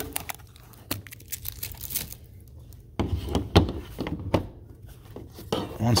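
A metal trading-card tin being handled and opened: a series of irregular clicks and knocks with some crinkling, the loudest about three seconds in.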